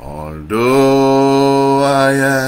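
A man singing a gospel hymn unaccompanied: after a short lead-in, he holds one long steady note from about half a second in.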